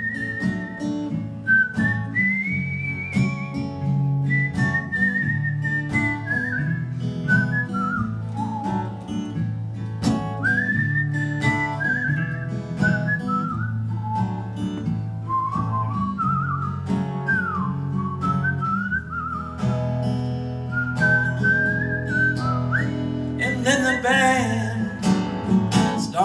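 Instrumental break in a live folk song: a whistled melody, sliding and wavering between notes, over strummed acoustic guitar and a second guitar.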